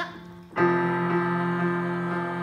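Electric keyboard accompaniment comes in about half a second in with a steady held chord, under a small group singing a quiet sustained long tone for a vocal exercise.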